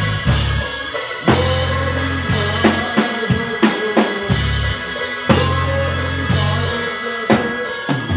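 Live band playing, with a close drum kit to the fore: kick, snare and tom strokes and cymbals over held electric bass notes about a second long, with keyboards underneath.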